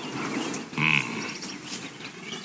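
Birds chirping in a film soundtrack's background, with a short pitched sound just under a second in and a quick high trill soon after.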